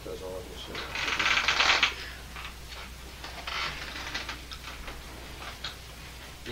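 Pages of a book being riffled and turned: a loud fluttering rustle about a second in, a shorter one near the middle, and small paper rustles between.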